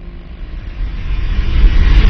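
A deep rumbling sound effect that swells steadily louder, with a rising rush of noise, building into a heavy boom at the very end.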